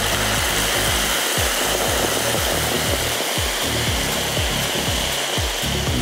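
Soy-sauce-based sauce sizzling steadily in a hot pan of fried tofu slices, just after it has been poured in. Faint background music runs underneath.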